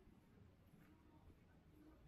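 Near silence: faint ambience of a quiet street, a low steady rumble with nothing standing out.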